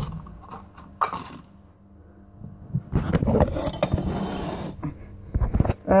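Plastic handling sounds: a knock, another about a second later, then a few seconds of crackling and scraping with many small clicks as frozen bloodworm cubes are pushed out of their plastic tray into a plastic cup.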